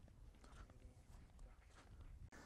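Near silence: a faint low rumble with a few soft ticks.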